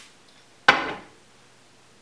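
A heavy cut-glass tumbler set down on a wooden countertop: one sharp knock with a short ring, about two-thirds of a second in.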